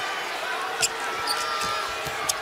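Basketball being dribbled on a hardwood court, a few separate bounces over steady arena background noise.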